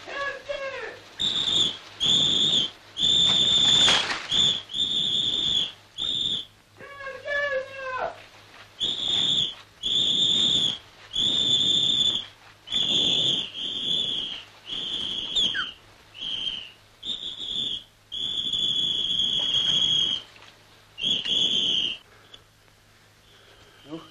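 A shrill whistle blown in more than a dozen separate blasts at one high pitch, some short and some held for a second or two. Two short wavering cries come through, one at the start and one about seven seconds in.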